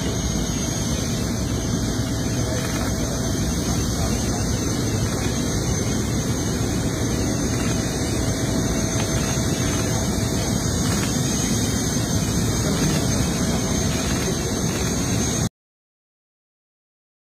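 A parked jet airliner's turbine running: a loud, steady roar with a faint constant high whine. It cuts off suddenly near the end.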